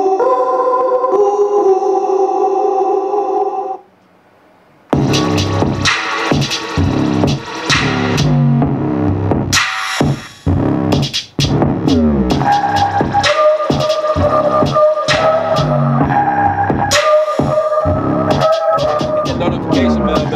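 A hip-hop beat played back from an Akai MPC Live through studio monitors: a held organ chord for about four seconds, a second-long gap, then drums and bass come in, with a held chord returning over the beat about midway.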